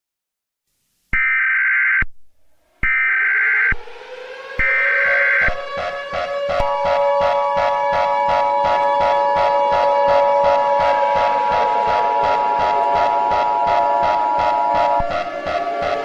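Emergency Alert System broadcast tones: three short bursts of data-header tones about a second apart, then a two-tone attention signal held for about eight seconds. Under the attention signal runs electronic background music with a steady beat.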